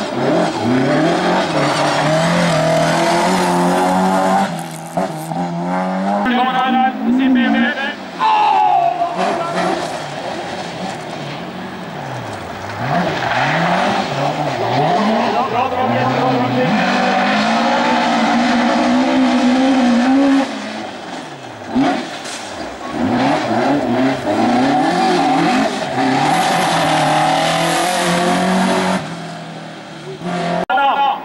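Hillclimb rally cars at full throttle, engines revving high and falling away repeatedly at gear changes and lifts, with tyres skidding on loose gravel. More than one car passes in turn.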